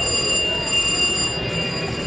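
Casino floor ambience around a video slot machine: steady high-pitched electronic tones over a continuous background din of machines.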